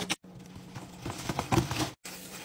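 Light hollow knocks and taps of a clear plastic produce container of spinach being handled, several in quick succession in the second half, over a low steady hum.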